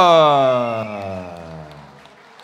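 A ring announcer's voice through a microphone, stretching out the last syllable of the winner's name in one long call that slides steadily down in pitch and fades away.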